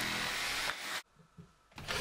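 Jigsaw cutting a curved hole in a wooden countertop sheet, a steady buzz that cuts off under a second in.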